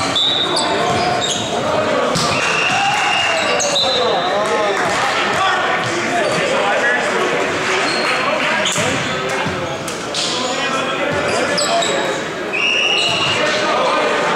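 Volleyball rally in a reverberant gym: players' voices calling and chattering, the ball being struck with sharp knocks, and several short high-pitched squeaks from sneakers on the hardwood floor.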